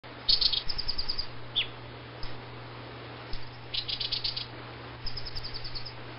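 Baya weaver chirping: three bursts of rapid high chips, with a short downward-slurred note between the first two, over a steady low hum.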